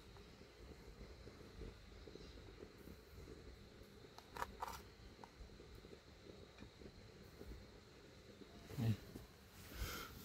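Faint wind rumble on the microphone, with two light clicks of a spoon against a plastic cup about four and a half seconds in.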